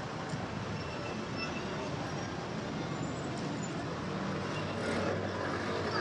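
Steady traffic noise of a busy city avenue, a constant hum of cars passing.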